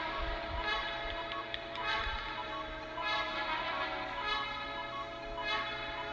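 Background music: held chords with short, repeated higher notes over them.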